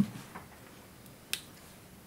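Quiet room with one short, sharp click a little over a second in, and a fainter tick shortly before it.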